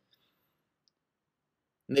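Near silence, broken only by two faint ticks, until a man's voice resumes near the end.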